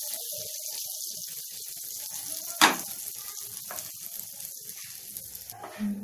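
Bread toast frying in butter in a pan, sizzling steadily, with one sharp knock about two and a half seconds in. The sizzling drops away near the end.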